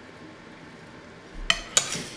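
A fork clinks twice against a plate, two sharp strikes a quarter-second apart about a second and a half in, each with a short ring.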